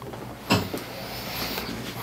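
Handling noise as a patient's leg is moved into position on a padded chiropractic table: one sharp click about half a second in, then soft, steady rustling of clothing against the cushion.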